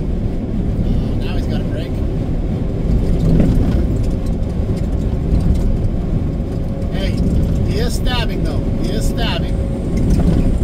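Steady low road and engine drone heard inside a semi-truck's cab while cruising at highway speed.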